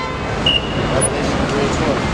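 Busy city street traffic noise with background crowd chatter, and a brief high-pitched tone about half a second in.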